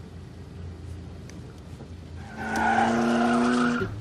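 A low steady car rumble, then a little past halfway a racing car engine comes in loud at a steady high pitch with tyres squealing, cutting off suddenly just before the end.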